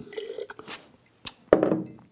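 A mouthful of wine spat into a ceramic spittoon jug: a short wet spray and splash, then several short clicks and a sharper knock about one and a half seconds in, with a brief hum from the taster.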